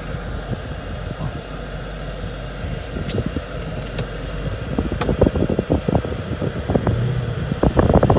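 Steady cabin noise inside a moving Ford Mustang: engine and air-conditioning fan hum as the car drives slowly off. Scattered short clicks and knocks join in during the second half.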